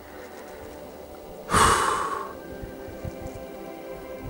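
A single heavy breath out, a sigh, about one and a half seconds in, fading away within a second.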